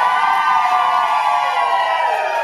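A long, high-pitched held vocal call that rises slightly in pitch and then sinks as it ends.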